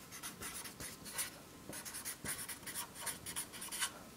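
Felt-tip marker writing on a sheet of paper: a run of quick, faint strokes.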